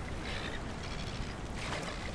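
Steady wind noise over choppy water lapping at the shore, with the faint splashing of a hooked black bream thrashing at the surface.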